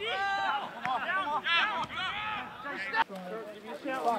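Men's voices calling and shouting out, the words unclear, with one sharp knock about three seconds in.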